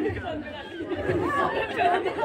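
Indistinct talk from several people at once, overlapping chatter with no single clear voice.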